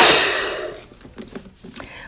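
Single-serve bullet-style blender switched off, its motor noise dying away over about half a second, followed by a few light clicks and knocks as the cup is handled.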